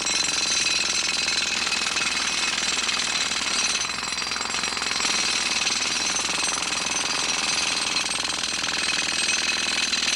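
Hand-held pneumatic air hammer with a chisel bit running continuously, chipping loose the top layer of unsound concrete on a bridge deck for deck repair. A steady rapid hammering that eases slightly about four seconds in.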